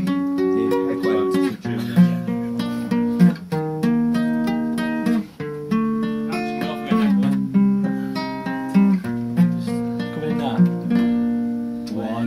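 Acoustic guitar played solo, fingers picking a run of single notes and chords that ring on, with a brief break about five seconds in.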